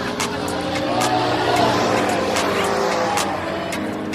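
A rotating-arm fairground thrill ride sweeping its gondola through the air. A rush of noise swells to a peak about halfway through and fades again as the gondola passes, with music playing underneath.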